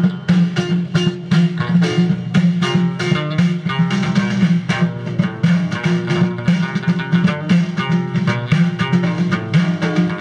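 Moroccan Amazigh folk ensemble playing live: a plucked lute carries a busy, repeating melody over frame drums beating a steady rhythm.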